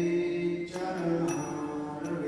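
A man chanting a mantra in a slow sung melody, holding each note before stepping to the next.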